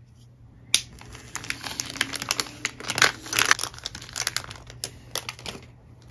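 Thin plastic packaging bag crinkling and rustling in irregular crackles as it is cut open with a utility knife, after a single sharp click about a second in.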